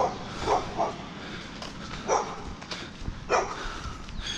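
Short animal calls, four or five at irregular intervals, over steady outdoor background noise.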